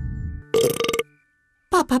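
A loud, buzzy cartoon burp, about half a second long, voiced by a man imitating a grass-eating dinosaur.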